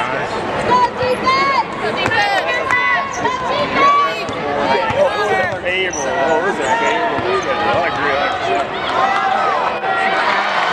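Basketball game on a hardwood court: sneakers squeaking in many short, high chirps and a ball being dribbled, over the steady voices of the crowd in the arena.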